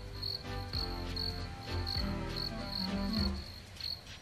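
Crickets chirping at night, short regular chirps about two a second. A soft music score with low held notes plays beneath them.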